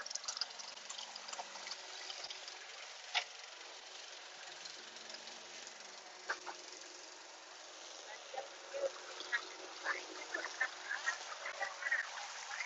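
Faint steady hum of a walk-behind lawn mower and a string trimmer cutting grass, with a few sharp clicks and, in the last few seconds, a scatter of short chirps.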